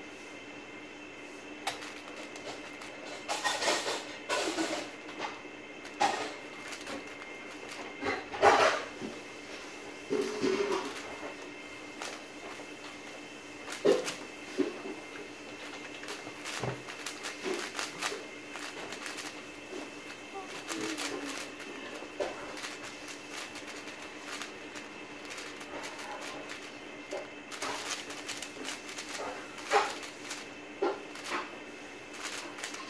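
Plastic 4x4 speed cube (WuQue M) being turned quickly during a timed solve: irregular bursts of rattling clicks from the layers, with short pauses between them.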